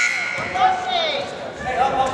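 Gymnasium scoreboard horn sounding one loud, steady electronic tone that fades out about a second and a half in, the signal for a substitution at the scorer's table.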